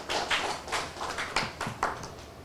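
Sparse applause from a small audience, a few people clapping irregularly, dying out just before the end.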